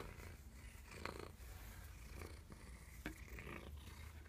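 A cat purring steadily and faintly while being petted, with a few soft rustles of the hand on fur.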